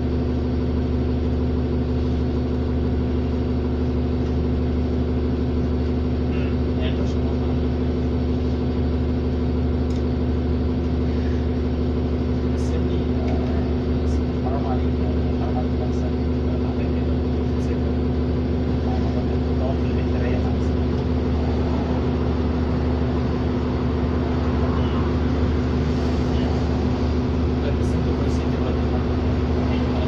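Steady drone of a 2007 New Flyer D40LFR diesel city bus heard from inside the passenger cabin, the engine idling evenly while the bus stands.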